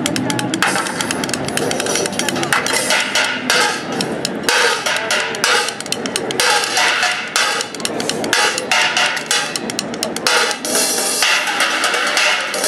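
Drumsticks playing fast street-drumming rhythms on improvised percussion: frying pans, pan lids, a plastic bucket, a wok and metal trays. Dense stick strokes run throughout, with stretches of splashy, cymbal-like metal crashes about a second in, around three to four seconds in, and again near the end.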